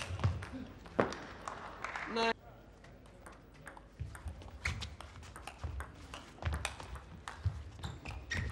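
Table tennis ball clicking off bats and table in a rally, with low thuds mixed in. The sound drops away abruptly a little over two seconds in, and the clicks start again about four seconds in.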